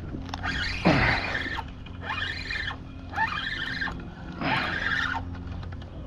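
Spinning reel cranked in four short bursts as a hooked snapper is reeled in; each burst is a gear whine that rises and falls in pitch.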